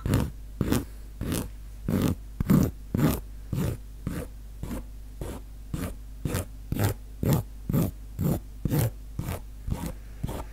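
A steady series of short scratchy strokes close to the microphone, about two a second, made as an ASMR trigger.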